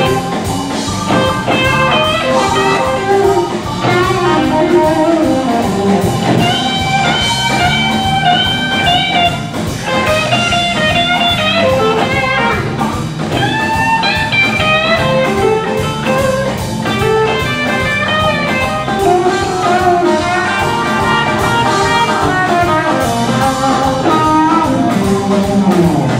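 Live electric blues band playing an instrumental stretch: an electric guitar lead with lines that bend in pitch, over bass, drum kit and keyboard.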